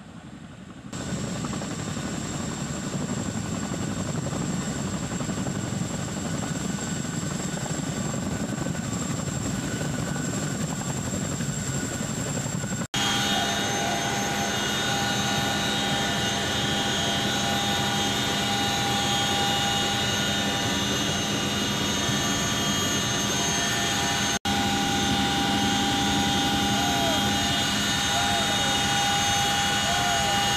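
CH-47 Chinook tandem-rotor helicopter hovering low over water, a dense steady rotor and engine noise. About 13 seconds in the sound cuts to the inside of the cabin, where the engines and transmission sound as several steady high tones over the rumble.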